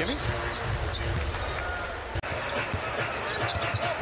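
Basketball dribbling on a hardwood court over a steady arena crowd murmur. The sound breaks off for an instant about halfway through.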